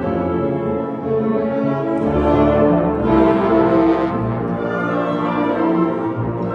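Symphony orchestra playing, with bowed strings holding sustained chords; the sound swells fuller and brighter about halfway through, then eases back.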